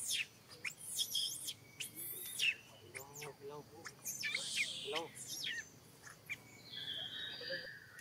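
Wild birds chirping, with many quick high notes that sweep sharply down in pitch, and near the end two steady whistled notes held for over a second.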